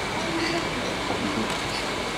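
Steady electric fan noise in a room, with faint murmured voices.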